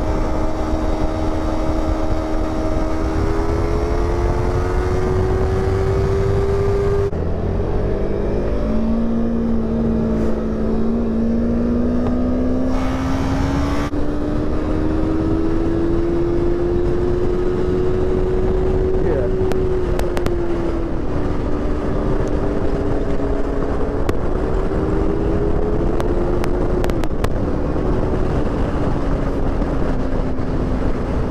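Sport motorcycle engine running at road speed, its pitch slowly rising and falling with the throttle, over heavy wind rush on the bike-mounted camera's microphone. The sound changes abruptly twice, at cuts between ride clips.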